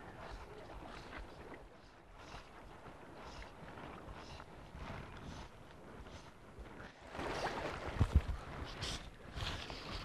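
Gentle seawater lapping against shoreline rocks, with wind rumbling on the microphone that grows louder about seven seconds in.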